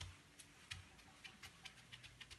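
Felt whiteboard eraser wiped across a whiteboard: faint, irregular small clicks and taps, several in quick succession in the second half.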